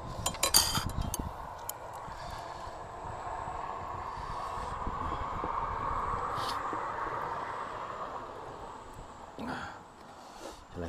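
Metal fork and chopsticks clinking against a ceramic plate and rice bowl in a quick run of clicks during the first second. Then a steady rushing sound slowly swells and fades over several seconds.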